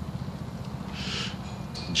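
A smoker's breath on a cigarette: a short breathy hiss about a second in. Under it runs a steady low rumble.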